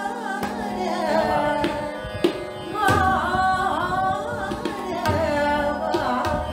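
A woman singing a melodic vocal line in Indian classical style, accompanied by tabla strokes with deep bass-drum tones, over a steady held tone.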